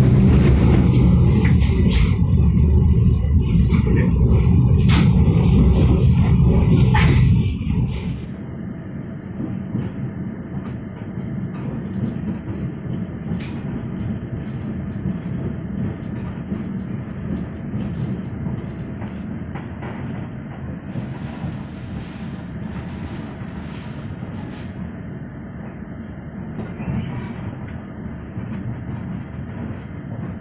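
Passenger train coach in motion, heard from inside: a loud low rumble with a few sharp clacks over the first eight seconds, then, after a sudden change, a quieter steady running noise as the train comes into a station.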